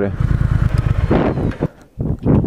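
Triumph Thruxton R's 1200 cc parallel-twin engine running at low revs as the motorcycle slows to a stop; the sound dips sharply near the end.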